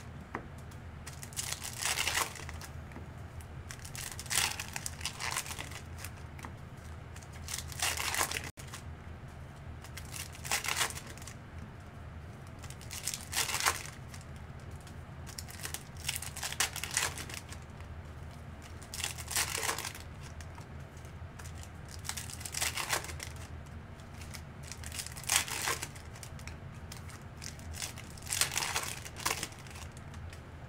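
Foil wrappers of Chrome U hobby trading-card packs crinkling and tearing as packs are ripped open one after another, in short bursts every two to three seconds, over a faint low hum.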